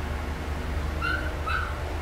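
Two short high-pitched animal calls, about half a second apart, over a low steady hum.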